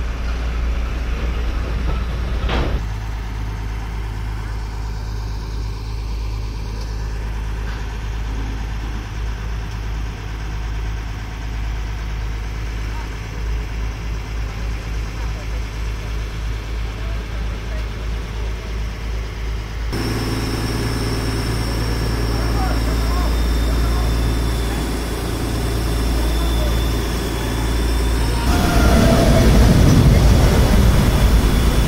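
Mobile crane's diesel engine running steadily with a low drone while hoisting a precast concrete box segment. There is a sharp knock near the start, and a louder noise comes in near the end.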